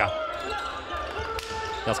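Floorball game sounds in an indoor sports hall: a steady murmur of the hall and crowd, with one sharp knock about one and a half seconds in. Commentary starts again near the end.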